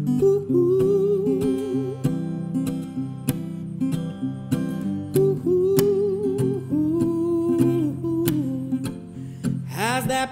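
Acoustic guitar strummed in a steady rhythm, with a man's voice holding long, wavering notes over it and no clear words.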